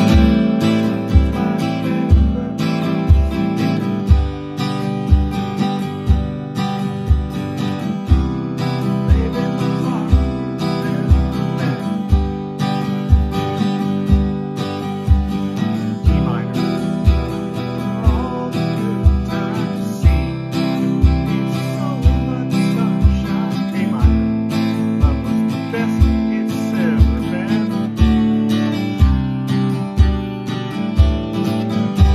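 Steel-string acoustic guitar strummed in steady chords at an up-tempo pace, with a regular low kick-drum thump from a foot stomp box keeping the beat underneath.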